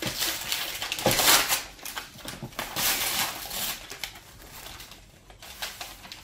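Tissue paper rustling and crinkling as it is pulled out of a gift bag, in uneven snatches that are loudest in the first half and die down near the end.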